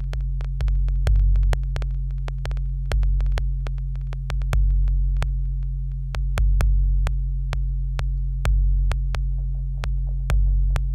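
Improvised electronic synthesizer music: deep bass tones swelling in repeated pulses about once or twice a second, with sharp thin clicks scattered over them.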